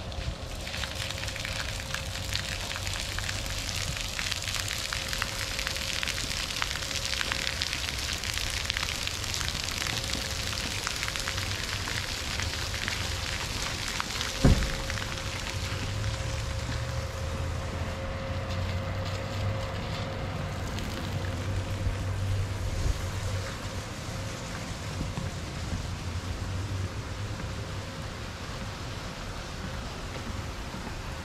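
Splash pad water jets spraying and splattering onto wet concrete, a steady hiss that fades after about eighteen seconds. One sharp thump about halfway through, and a faint steady hum underneath.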